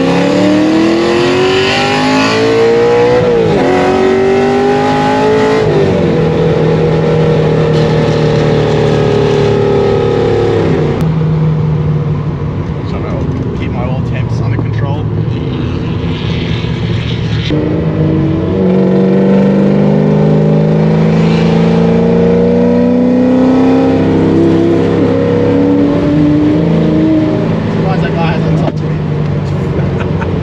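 Ford Falcon GT's 5.4 L DOHC V8, heard from inside the cabin, pulling hard from a rolling start with its pitch climbing. The pitch drops at gear changes about three and six seconds in, then falls away slowly as the throttle eases. Later the engine pulls up gradually again and holds a steady note.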